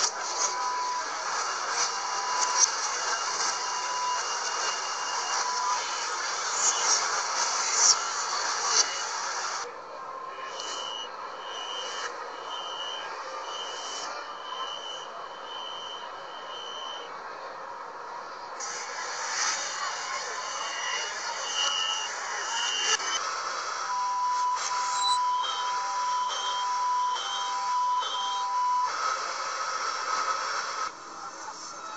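Chinese metro train door-closing warning beeps from several trains in turn, played in reverse, over train and station noise. Runs of short beeps about a second apart: a mid-pitched run at the start, a higher-pitched run in the middle, and a two-tone run near the end.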